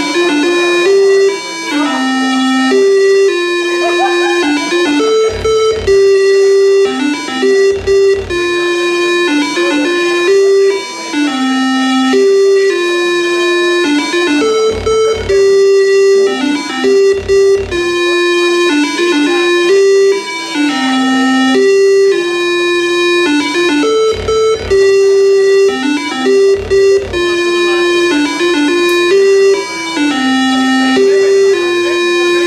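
Synthesized music from a 256-byte demoscene intro, played loudly over hall speakers: a melody stepping between a few notes in a repeating loop, with short low thumps underneath.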